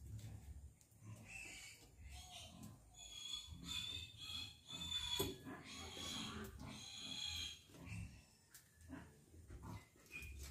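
An animal's high-pitched calls: a run of about seven cries, each half a second to a second long, from just after a second in until about seven and a half seconds.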